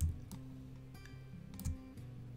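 Soft background music with low held notes, and a few clicks at the computer: a sharp one right at the start and a smaller one near the end.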